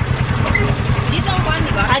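Motorcycle engine of a tricycle running steadily, heard from inside its sidecar, with a fast even beat under the talk.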